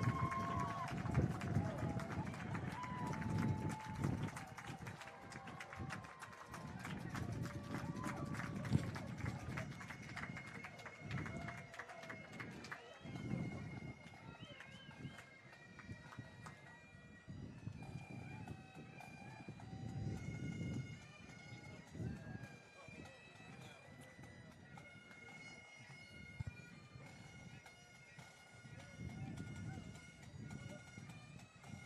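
Bagpipes playing a melody of held notes, over an uneven murmur of crowd noise that is loudest in the first few seconds.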